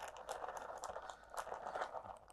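Faint crinkling of a plastic zip-top bag as cooked rice and quinoa is squeezed out of it onto a metal tray, with scattered soft ticks.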